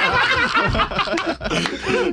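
Laughter from the people in the room, a run of short chuckles that follows a joke.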